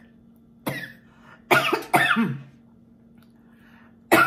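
A woman coughing hard: one cough, then a quick run of two or three more about a second later. She is choking on food that went down the wrong way, which she puts down to the heat of a hot pepper.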